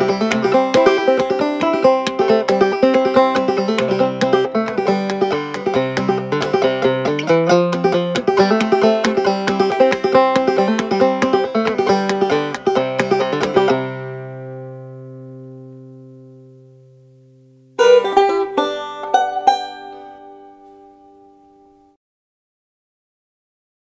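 Clawhammer banjo played without singing: a steady, rhythmic run of plucked notes and brushed strums, which stops about fourteen seconds in with the strings left ringing and fading away. A few seconds later a short burst of plucked notes sounds and rings out to silence.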